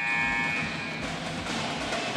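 High school pep band playing: snare, tenor and bass drums with saxophones and other reed horns, opening on a held chord.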